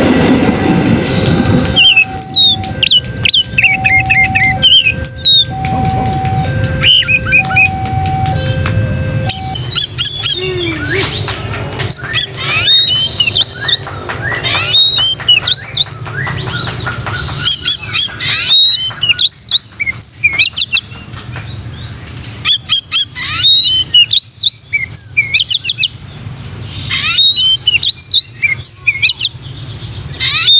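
Oriental magpie-robin (kacer) singing loudly in rapid, varied whistled phrases. In the first ten seconds a passing train's low rumble and a steady two-note tone, alternating about once a second, run underneath.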